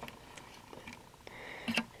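Faint handling sounds: a few light ticks as a thin metal head pin is pressed and positioned against a cutting mat, the clearest one near the end.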